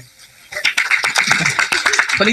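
Brief clapping that starts about half a second in, with a man's laughter over it.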